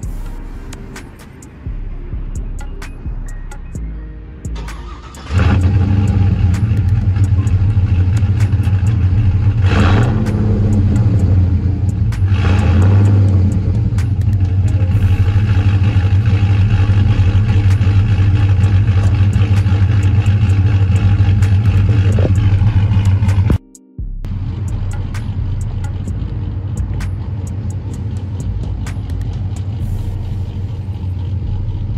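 Chevy Silverado pickup's engine starting about five seconds in and running loud and steady, with two short revs around ten and twelve seconds. After a brief dropout near the end it is heard idling, quieter.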